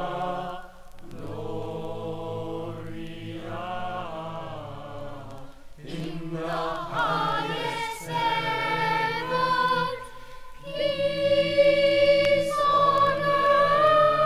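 A choir singing a gospel mass setting in phrases with short breaks between them, louder over the last few seconds. It is played back from a vinyl LP.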